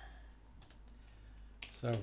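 A few scattered keystrokes on a computer keyboard, faint over a low steady hum.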